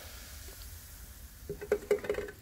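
Cola fizzing faintly in a plastic bucket, then a few light knocks near the end as a plastic car vent goes into the liquid and bumps the bucket.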